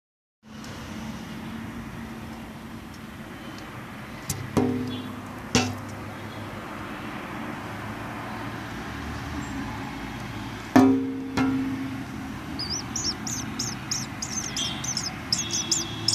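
Nestling birds in a nest cheeping in a rapid run of high calls, about five a second, starting some three seconds before the end. Before that there is a steady hiss with a few sharp knocks, the loudest about eleven seconds in.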